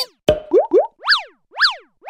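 Cartoon-style sound effects for an animated logo: a few quick upward pitch sweeps, then two springy boing-like chirps that rise and fall in pitch, about half a second apart.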